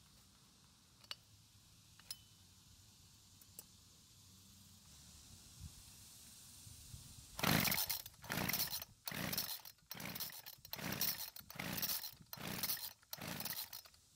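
A few faint clicks, then a Homelite two-stroke string trimmer being cranked with about nine quick pulls of its recoil starter rope. The engine turns over but never fires, despite fuel primed into the cylinder, spark and compression; the owner suspects an air leak from loose cylinder bolts.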